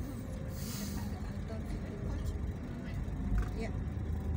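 Steady low rumble of a vehicle driving slowly along a road, engine and tyre noise, with a brief hiss about half a second in.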